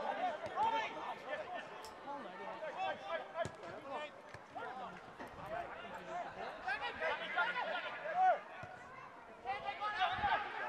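Men's voices shouting and chattering over one another at an outdoor football match, with a couple of sharp knocks about two and three and a half seconds in.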